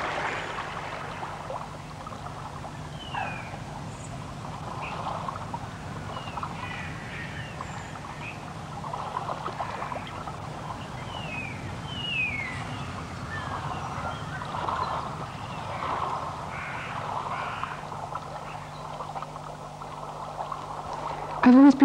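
Scattered wildlife calls, among them short falling chirps, over a steady low hum and hiss.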